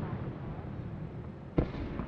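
Aerial fireworks: the echoing rumble of a shell burst dying away, then a single sharp bang about one and a half seconds in, echoing briefly.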